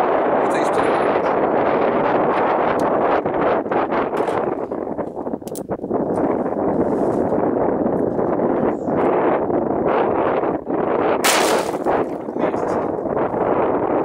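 A 10mm semi-automatic pistol fired at plastic jug targets. The loudest, sharpest shot comes about eleven seconds in, with a few smaller sharp cracks earlier. Steady wind noise on the microphone runs underneath.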